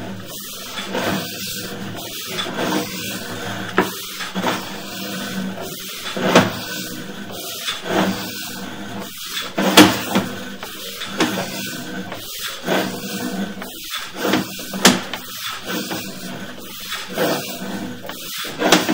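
Sewer inspection camera's push cable being pulled back out of the line by hand: irregular knocks and clatters, several a second at times, as the cable and its reel move.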